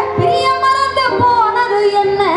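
A woman singing a Tamil folk song into a microphone, holding long notes that bend and slide in pitch.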